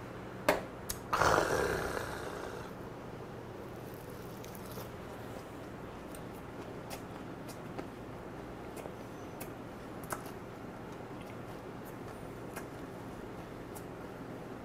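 A small glass tapped down on the table, then a loud breathy 'kha' exhale after downing a shot of liquor, fading over about a second. After that only faint scattered clicks of eating and chewing.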